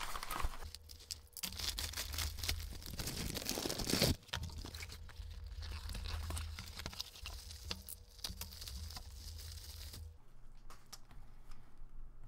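Plastic postal mailer bag being torn open and crinkled, the loudest tear just before four seconds in, followed by rustling and handling of the cardboard box inside, which quiets down near the end.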